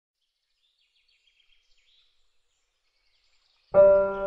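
Faint bird chirps, then a piano chord struck near the end as the music begins.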